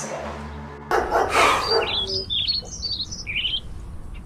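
Small birds chirping: a quick run of short, high-pitched chirps, each sliding downward, starting a couple of seconds in. They follow a brief burst of noise just after the first second.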